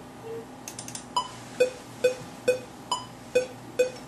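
Sparse electronic beat part with the drums dropped out: a short pitched synth blip repeating about twice a second, starting about a second in, with a few faint clicks just before it.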